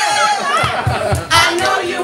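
Several voices chanting and singing over a backing track, with a low beat pulsing about four times a second in the middle and a loud shout or clap burst about halfway through.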